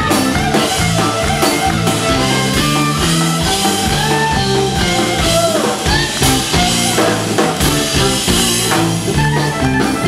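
Live band playing an instrumental passage of a country-rock song, electric bass and drum kit keeping a steady beat under a lead line, with no singing.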